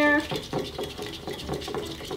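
A plastic fork stirring sticky pink rubber-cement slime in a bowl, with irregular small clicks and wet sounds as the fork works against the bowl. The activator has just gone in, and the glue is starting to set into slime.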